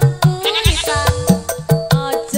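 A live dangdut band playing: a fast, even drum beat under a melody line that bends and wavers in pitch.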